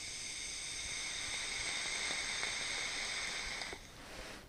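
An electronic cigarette drawn on in one long pull: a steady hiss of the firing coil and the air pulled through it, lasting about four seconds and cutting off shortly before the end, followed by a short breathy exhale of the vapour.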